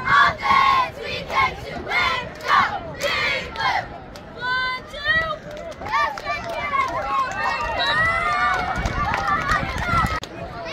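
A squad of girl cheerleaders shouting a cheer in unison, in short chanted words about two a second. One long high call follows about halfway in, and then many voices yelling and cheering over each other.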